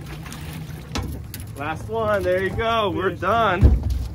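Excited whooping and yelling from anglers as a coho salmon is netted, over the steady low hum of an outboard motor running at idle, with heavy low thumps near the end.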